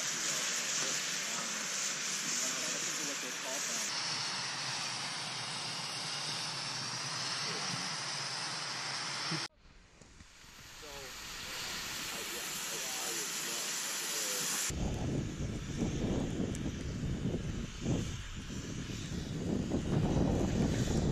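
Steady outdoor hiss with faint distant voices, broken off by an abrupt cut about nine and a half seconds in. From about fifteen seconds in, wind buffets the microphone with a gusty low rumble.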